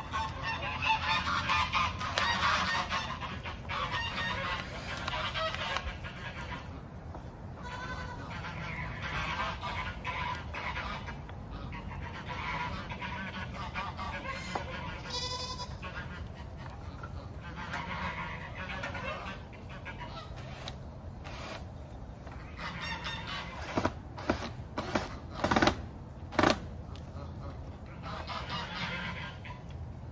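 Farm fowl calling again and again in the background, with a few sharp knocks near the end.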